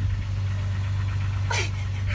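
Car engine idling close by: a steady low hum, with a brief swish about a second and a half in.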